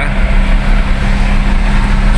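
Steady engine and road noise heard inside a car's cabin while it cruises along a highway, with a constant low hum underneath.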